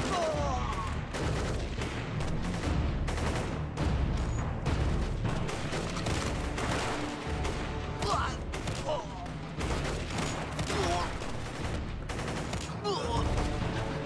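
Battle gunfire: many shots in rapid, overlapping volleys, with men shouting at moments.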